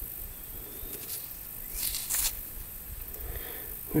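Faint outdoor background with a steady high hiss, and one brief rustle or scrape about two seconds in.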